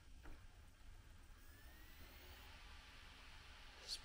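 Verbatim slim external Blu-ray drive spinning up a disc to read it: a faint whir with a thin rising whine about a second and a half in.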